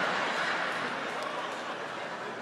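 Large audience laughing and murmuring in response to a joke, fading gradually.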